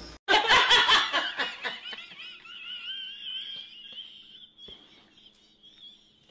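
Hysterical laughter: a loud burst of rapid cackles that trails off into a long, high, wavering squeal, fading over several seconds.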